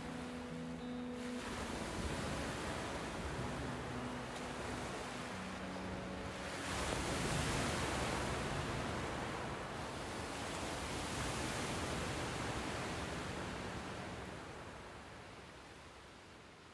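The outro of a post-rock track: a held low chord fades out in the first second or so, leaving a surf-like wash of noise. The wash swells about seven seconds in, then fades away near the end.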